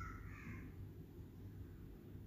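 A short bird call, about half a second long, right at the start, over a faint low steady hum.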